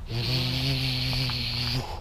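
A dog growling over a rubber ring toy it is holding, one steady low growl lasting under two seconds that stops abruptly: a warning to keep the toy.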